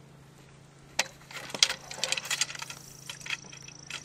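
Telescope truss poles and their fittings clinking and rattling as they are seated into the bottom connections of a Dobsonian's mirror box, starting with a sharp click about a second in and followed by a run of irregular metallic clinks.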